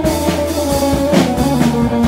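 Live rock band playing: guitar notes over a drum kit and a low bass line.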